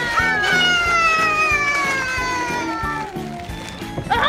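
A long, high-pitched wailing call, one held note that slides slowly down in pitch for about three and a half seconds, over background music with a steady beat.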